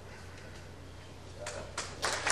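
Two sharp clicks of pool balls about a second and a half in, a third of a second apart, as the cue ball is struck and hits another ball on a safety shot, over a low steady room hum.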